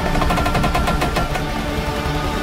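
A rapid burst of machine-gun fire, about ten shots a second for roughly a second and a half, over a sustained film score.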